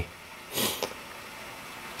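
A person's short sniff, about half a second in, over faint steady background noise.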